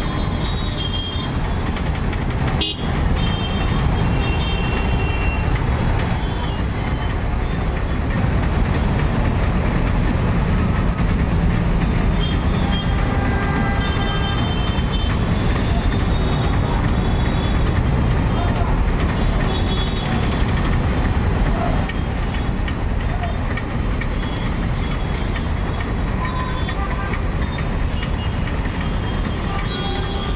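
Congested city traffic at a crawl: engines of trucks, motorcycles and auto-rickshaws running with a steady low rumble. Vehicle horns toot again and again, most thickly about halfway through.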